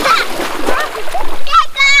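Splashing of people wading and kicking through shallow seawater, with high-pitched voices calling out near the end.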